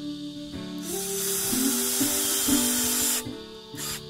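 Cordless drill running into pallet wood, heard as a loud hissing noise for about two and a half seconds, then a short second burst near the end, over acoustic guitar background music.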